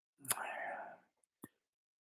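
A man's soft, breathy out-breath in a pause between words, with a short click near its start and another brief click about halfway through.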